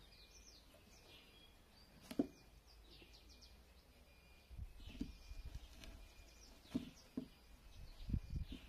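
Faint chirping of small birds throughout, short quick calls. A sharp knock about two seconds in, then from about halfway a run of low bumps and knocks as the plywood box is shifted and tilted by hand.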